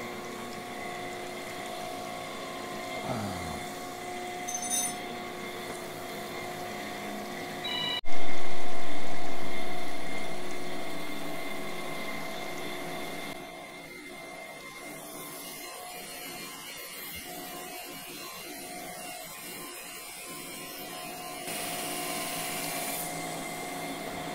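Camshaft grinder finish-grinding a main bearing journal on a Viper V10 camshaft, wheel spinning with coolant running over the work: a steady machine hum with several steady tones. About a third of the way in, the sound jumps loud and then fades away over about five seconds as the cut on the journal finishes.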